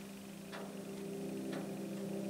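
A low, steady droning tone with a soft clock-like tick about once a second, a tension underscore laid under the documentary footage.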